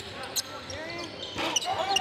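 Basketball bouncing on a hardwood gym floor during play, a few sharp bounces, with voices of players and onlookers echoing around the gym.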